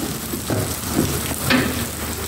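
Steady hiss of rain falling, with a brief faint murmur of a voice about one and a half seconds in.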